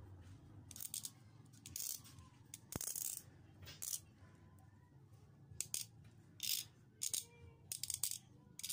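A knife blade shaving a plastic ballpen tube in short, scraping strokes, about eight with pauses between them, and a sharp click about three seconds in.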